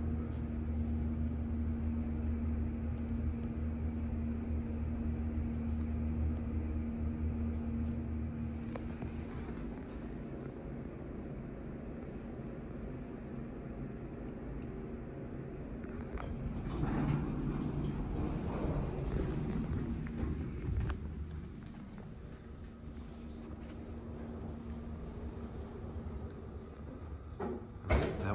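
A 1992 Schindler hydraulic elevator finishing its descent, with a steady low hum that fades out about nine seconds in as the car settles at the floor. About seventeen seconds in comes a louder stretch of rumble and clatter as the cab doors open, lasting a few seconds before it quietens.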